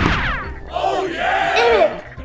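A quick falling whoosh, then a boy's strained, angry yell lasting about a second.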